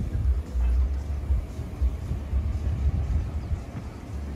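Wind buffeting the camera microphone in uneven gusts, a deep rumble with little else above it.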